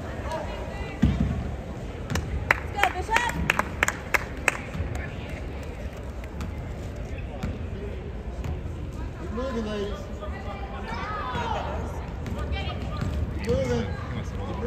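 Basketball play on a hardwood court: a loud thud about a second in, then a quick run of sharp squeaks and slaps over about two seconds, from sneakers and the ball. Voices carry in the gym near the end.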